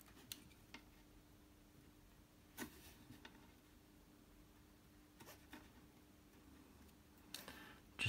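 Near silence, broken by a few faint, brief rustles of cloth wire insulation being pushed back along the conductor by hand, over a faint steady low hum.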